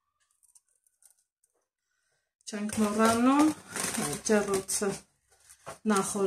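A woman talking, starting about two and a half seconds in and again near the end, after a near-quiet stretch with a few faint, soft ticks.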